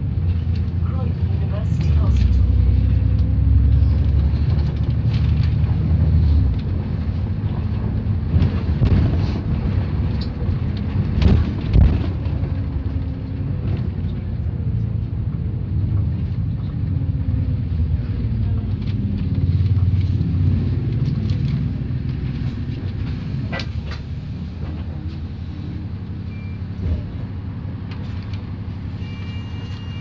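Double-decker bus running, heard from inside on the upper deck: a steady low engine and road rumble whose pitch rises and falls as the bus speeds up and slows, with knocks and rattles from the bodywork.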